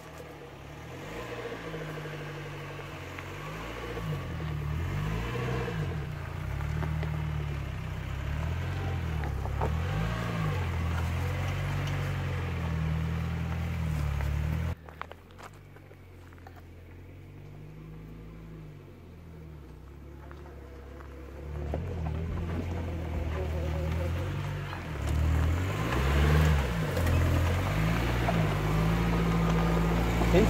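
UAZ 452 van's engine labouring up a steep dirt track, its pitch rising and falling with the throttle. It drops away suddenly about halfway through, then returns and grows louder as the van draws close near the end.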